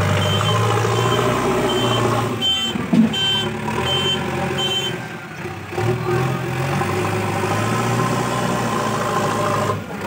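JCB 3DX backhoe loader's diesel engine running and changing pitch as it manoeuvres, with its reversing alarm giving a run of short high beeps, about three every two seconds, from about two and a half to five seconds in. A single thud near three seconds in.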